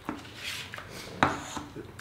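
Plastic food trays and cutlery being handled on a table during a meal, with a light clatter and one sharp click a little past a second in.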